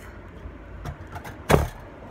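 A low steady rumble with a single sharp knock about one and a half seconds in.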